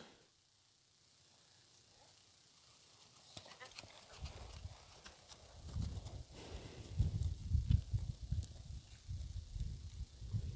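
Horse's hoofbeats on soft turf and dirt as a ridden horse moves past: faint dull thuds that begin a few seconds in, are loudest a little past the middle, and fade toward the end.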